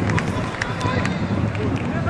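Live football match sound: voices shouting on the pitch over a steady wash of crowd and field noise, with scattered short knocks.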